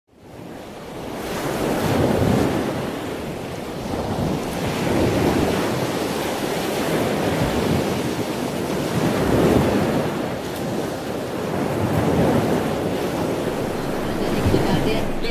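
Sea surf: waves breaking on a beach, the rush of water swelling and easing every few seconds. It fades in over the first two seconds.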